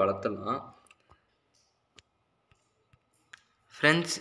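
A few faint, isolated clicks, about five, scattered across a near-silent pause between stretches of a man's speech.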